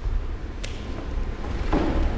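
Low steady room rumble with a single short click a little over half a second in, as a person shifts from sitting onto one knee; a voice starts just before the end.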